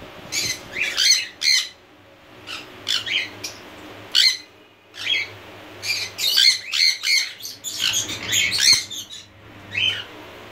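Jenday conure calling again and again in short, shrill calls that come in bursts, thickest from about five to nine seconds in.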